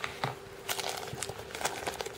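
Small plastic bag crinkling lightly as it is handled, in soft, scattered rustles.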